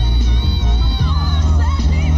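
Two female soul-pop vocalists singing a live duet with band accompaniment, the voices held and bent with wide vibrato over a steady bass line; an audience cheers along underneath.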